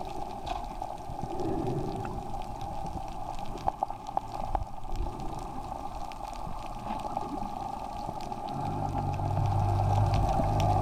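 Underwater ambience through the camera: a steady watery hiss with scattered small clicks. About three-quarters of the way through, a low steady hum comes in and grows louder toward the end.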